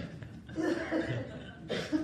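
People chuckling and laughing in two short bursts.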